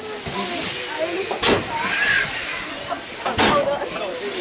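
Steam yacht swing-boat ride in motion: loud hissing rushes about two seconds apart, at about one and a half seconds in and again near the end, with people's voices underneath.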